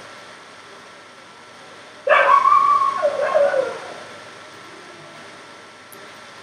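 A dog giving two drawn-out yelping barks about two seconds in, the second falling in pitch.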